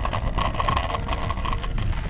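Steady low rumble of wind buffeting the microphone, mixed with the rolling of a measuring wheel over a concrete path while running, with a faint thin tone through the middle.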